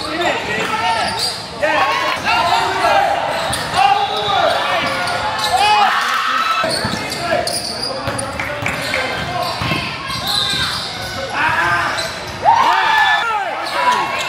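Basketball game sounds in a large echoing gym: a ball bouncing on the court, sneakers squeaking in short repeated chirps as players cut and run, and voices calling out from players and spectators.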